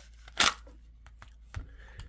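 A short scrape from a Kydex plastic holster being handled, once about half a second in, then a faint soft knock near the end.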